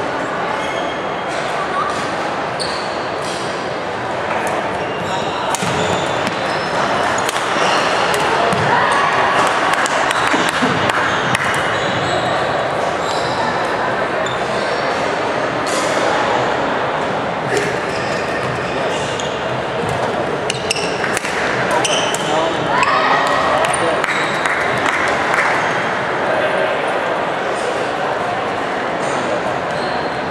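Badminton play in a large, echoing hall: sharp racket hits on the shuttlecock, footfalls and short shoe squeaks on the wooden court, over steady background chatter from spectators.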